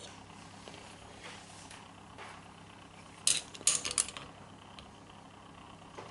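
Metal vernier caliper being handled and repositioned on a steel hub spindle: a few short clicks and scrapes about three to four seconds in, over a faint low hum.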